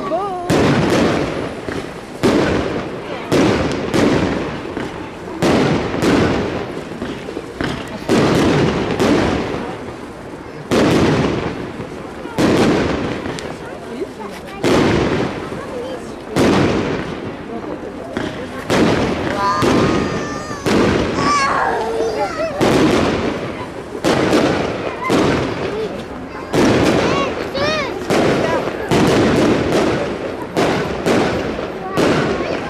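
Fireworks display: a rapid run of firework bangs and bursts, about one to two a second, each trailing off in echo.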